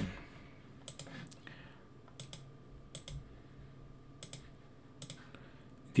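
Computer mouse clicking as points are placed on a map: about a dozen sharp, quiet clicks at irregular intervals, several in quick pairs, over a faint steady hum.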